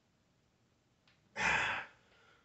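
A man's forceful exhale during a bench press rep, one short breathy blast of about half a second as he pushes the barbell up off his chest, near the end.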